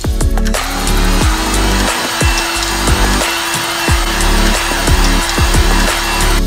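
Electric heat gun switched on about half a second in and blowing steadily, shrinking plastic wrap onto a fragrance bottle's presentation tube. Background music with a steady beat plays underneath.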